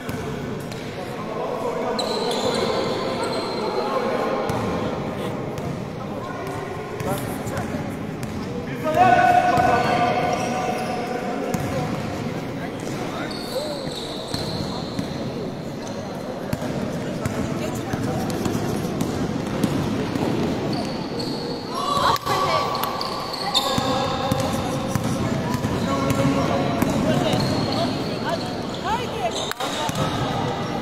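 Basketball game in an echoing sports hall: the ball bouncing on the court under players and spectators calling and shouting, with a loud shout about nine seconds in and short high-pitched squeaks now and then.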